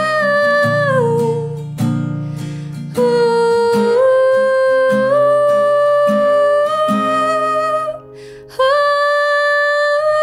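A woman singing long held notes over a strummed acoustic guitar. Near the end the voice breaks off briefly, then comes back in on a higher held note.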